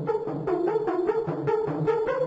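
Hardstyle synth lead from Toxic Biohazard playing a fast run of short chopped notes, about seven a second, stepping between a few pitches. The lead is cut into stutters to build tension, with its low-pass filter cutoff under automation.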